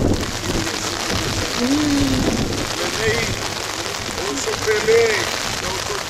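Steady rain falling on umbrellas and the ground, a continuous even hiss, with a few short bits of people's voices mixed in.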